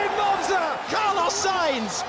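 Speech: short clips of voices edited one after another, without a pause.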